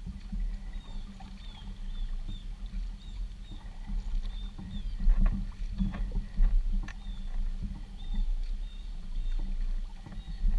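A kayak being paddled with a double-bladed paddle: the blades dipping and splashing in rhythm, with a steady low rumble of wind buffeting the camera and a few sharper knocks and splashes around the middle.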